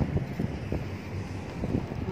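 Wind buffeting the phone's microphone: an uneven low rumble with irregular gusty thumps.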